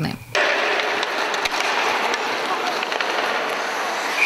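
Live ice-hockey rink sound: a steady hiss of skates on the ice, starting about a third of a second in, with scattered faint clicks of sticks and puck.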